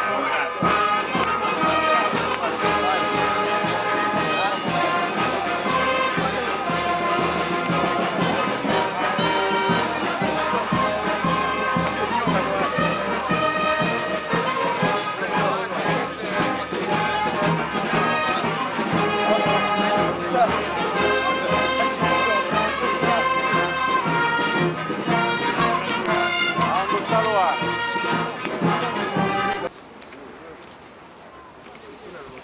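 A brass band playing music with trumpets and trombones, steady throughout, cutting off abruptly just before the end.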